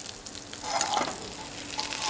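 Hamburg steaks sizzling in hot oil in a frying pan while a slotted metal spatula lifts one out, with a small knock of the spatula about a second in.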